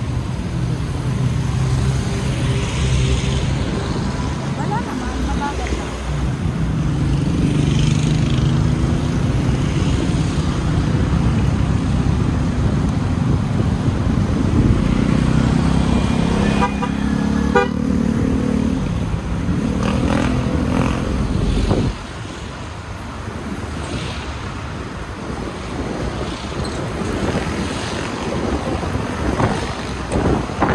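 Yamaha Aerox 155 scooter's single-cylinder engine running under way, with wind and road noise from town traffic. A vehicle horn toots briefly a little past halfway, and the overall sound drops suddenly in level about two-thirds of the way through.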